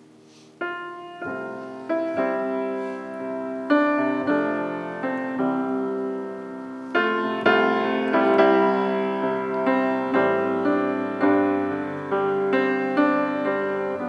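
Grand piano playing the introduction to a hymn, with no voices yet. The first chord comes about half a second in, and then chords and notes are struck roughly every second, each ringing and fading.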